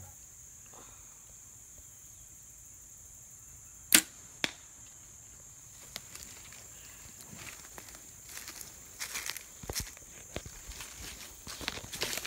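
A Browning Micro Midas compound bow shooting once: a sharp snap of the string about four seconds in, then a second, softer crack half a second later as the field-tip arrow strikes the hay bale target. Footsteps and rustling in dry grass follow.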